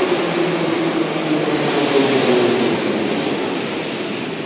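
Metro train running at the station: a loud, steady rumble with a low hum, beginning to fade near the end.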